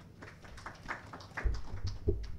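Faint room noise with scattered small taps and clicks, and low thumps in the second half.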